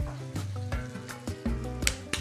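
Mapo tofu sauce sizzling in a frying pan on a portable gas stove, with a few short clicks, under background music with steady low notes.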